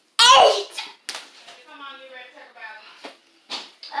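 A child's wordless effort sounds during burpees: a loud cry falling in pitch just after the start, then a long strained whine. A few sharp thumps fall between them.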